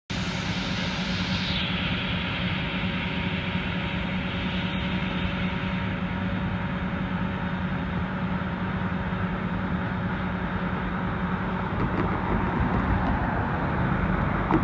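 Steady low rumble of an approaching diesel freight train's locomotives, growing louder near the end.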